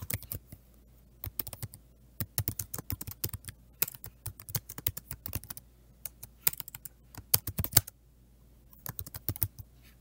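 Computer keyboard typing in several quick bursts of keystrokes, with brief pauses between them.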